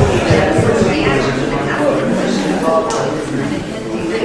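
Indistinct conversation among a few people in a large lecture hall, with no single clear voice.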